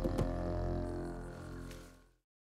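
Background music with a low, steady drone, fading out near the end.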